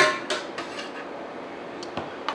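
A metal spoon clinks once against a stainless-steel saucepan as simmering water is swirled for poaching eggs, followed by a faint steady hiss of the stirred water. A small faint click comes near the end.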